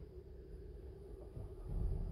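Mercedes GLS350d's 3.0-litre V6 turbodiesel being push-button started, heard from inside the cabin: quiet at first, then the engine catches about one and a half seconds in and carries on as a low rumble.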